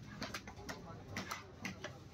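A large fish-cutting knife working through a big katla fish on a wooden chopping block: a quick, uneven series of sharp knocks and crunches as the blade cuts through scales and flesh and strikes the block.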